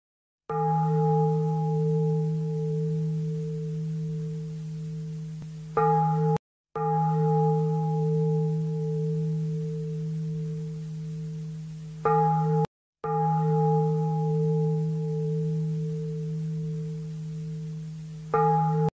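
A deep Buddhist bell struck and left to ring, fading slowly over about five seconds. It is struck again and cut short almost at once. This strike-and-ring pattern repeats three times, with brief silent gaps in between.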